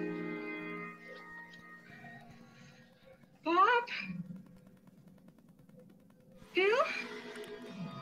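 Horror film soundtrack playing from the monitor: a held musical chord that fades out in the first two seconds, then two short voice sounds whose pitch rises steeply, one about three and a half seconds in and another near seven seconds.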